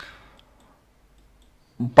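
A man's hesitation pause in speech: a short mouth click at the start, a fainter click just after, then a quiet gap before his voice comes back in near the end.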